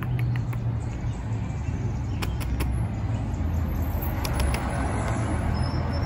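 A steady low mechanical rumble, with a few faint clicks in the middle.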